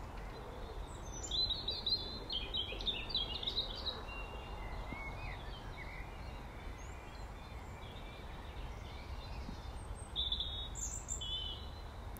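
Songbird singing in short chirping phrases: one run of song in the first few seconds and another near the end, over a steady low background rumble.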